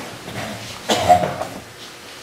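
A man coughs once, about a second in.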